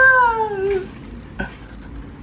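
A person's high voice drawing out the end of an excited exclamation, 'น่ารักมาก' ('so cute'), as one long sliding tone that falls away over about the first second. A single short click follows a little later.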